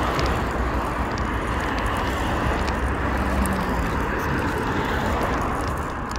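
Road traffic: cars passing close by on the road, a steady rush of tyre and engine noise that eases slightly near the end.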